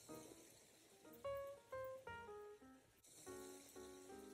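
Faint background music of single plucked notes, one about every half second, each starting sharply and fading.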